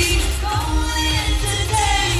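Live pop music played loud through an outdoor concert sound system: a woman singing over a heavy bass beat, as heard from the crowd.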